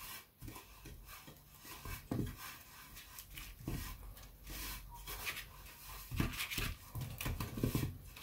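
A piece of butter being rubbed around the inside of a cake pan: faint, irregular swishing and scraping strokes as the pan is greased.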